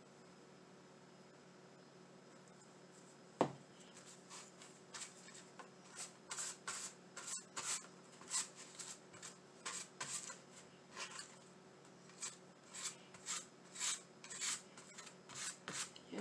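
Faint swishing of paintbrush strokes spreading Mod Podge over a vinyl window cling on canvas, about two strokes a second, beginning after a single sharp knock a few seconds in.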